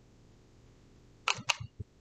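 Near silence with two quick light clicks about a second and a half in, followed by a few fainter ticks.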